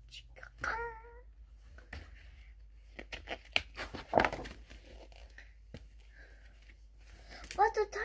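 Stiff pages of a children's board book being handled and turned, with rustling and a few sharp taps, loudest about four seconds in. A brief hummed voice sound about a second in, and speech starting just before the end.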